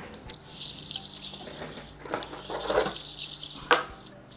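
Light rustling and small clicks from hands handling small parts, with one sharp click just before the end.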